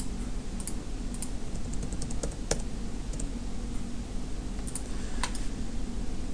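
Sparse, irregular clicks of a computer mouse and keyboard as CAD software is operated, over a steady low hum.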